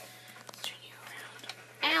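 Quiet room tone with a few faint clicks of handling, then a short "ow" from a voice near the end.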